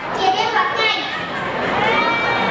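A young boy speaking into a microphone, delivering a speech.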